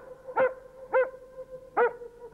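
A large shaggy dog barking three times, short pitched barks about two thirds of a second apart.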